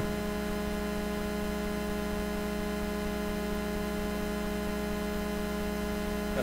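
Steady electrical hum with a buzz of many overtones, unchanging throughout, with no other sound over it.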